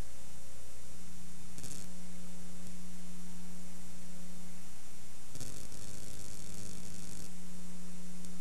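Steady electrical mains hum and buzz with hiss, with no music or voice. A short burst of louder hiss comes about two seconds in, and a longer one from about five to seven seconds in.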